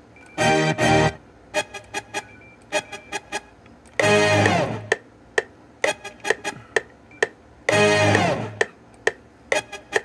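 Chopped instrument samples triggered from FL Studio's FPC, playing a looping pattern: a longer pitched chord chop comes back about every four seconds, with short plucked hits in between.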